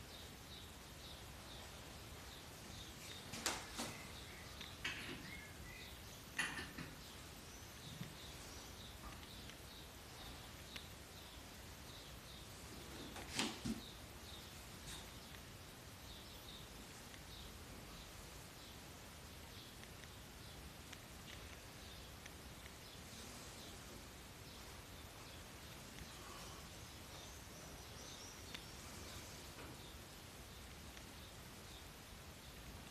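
Quiet room with a faint, high chirping repeating steadily throughout. A few soft knocks and clicks from objects handled on the altar, in a cluster in the first several seconds and again near the middle.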